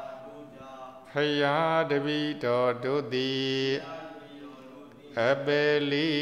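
A Buddhist monk's male voice chanting in a steady, held pitch: one phrase from about a second in to nearly four seconds, a short pause, then the next phrase beginning near the end.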